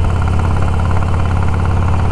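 Cruiser motorcycle engine running at a steady speed while riding, a low, even engine note with no revving.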